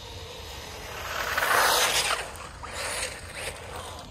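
Haiboxing 2997A brushless RC car running on 2S, driving past on asphalt: its motor and tyres swell to a peak about a second and a half in, then fall away with a couple of smaller bursts.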